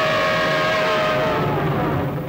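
Dramatic background score: a sustained synthesizer chord over a steady rushing noise. The chord's upper tone stops shortly before the end and the noise dies away.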